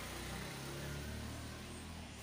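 A steady low motor hum with a light hiss behind it, fading a little near the end.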